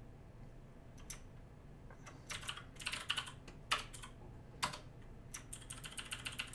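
Computer keyboard typing: scattered key presses starting about a second in, with quick runs of several keystrokes in between and again at the end.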